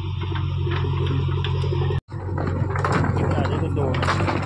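JCB backhoe loader's diesel engine running steadily. After an abrupt cut about halfway through, the machine is heard working again, with scattered knocks and clatter of rocks being moved by its bucket.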